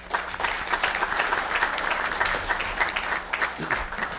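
Audience applauding, a dense run of many hands clapping that thins out and dies away near the end.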